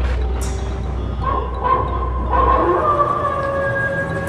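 Horror-intro sound effects: a deep low rumble with a brief high swish just after the start, then a long wavering howl that comes in about a second in and grows stronger as the rumble fades out.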